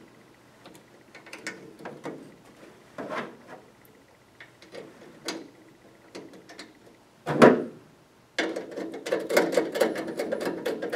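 Light clicks and taps of a small metal retaining bracket and screw being handled on a light fixture's metal frame, with a louder clunk about seven seconds in. From about eight seconds a screwdriver turns the bracket's screw, a dense run of quick clicks.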